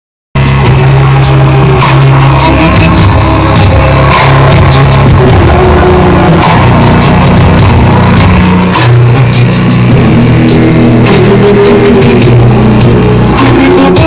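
A song with a deep, sustained bass line and a steady drum beat, played very loud through a car audio system with Digital Designs DD 2512 subwoofers, heard from inside the car cabin.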